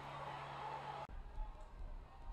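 Faint stadium ambience between plays, a low murmur of crowd and field noise, which changes abruptly about a second in at an edit.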